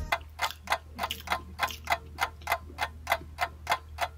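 A clock ticking steadily, about three ticks a second.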